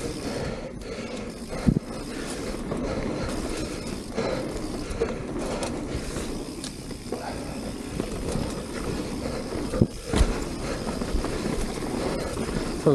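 Mountain bike rolling fast down a dirt singletrack: steady tyre rumble on the packed dirt with the bike's rattle, and sharp knocks from bumps about two seconds in and again near ten seconds.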